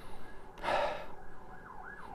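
A person sniffing a perfume test strip held under the nose: one soft inhale through the nose, about half a second long, just over half a second in.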